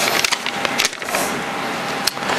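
Small folded paper slips rustling and crinkling as a slip is unfolded by hand and others are stirred in a glass bowl: a dense crackle of small clicks.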